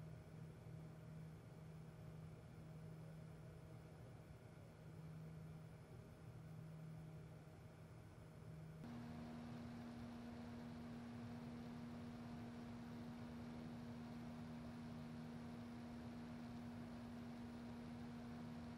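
Two Corsair LL RGB case fans running at 1000 RPM with a faint, steady hum and rush of air. About nine seconds in they step up to their full speed of 1600 RPM: the hum rises in pitch and the airflow grows louder and hissier.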